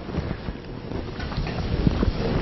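Low, uneven rumbling noise on the microphone, growing louder over the two seconds.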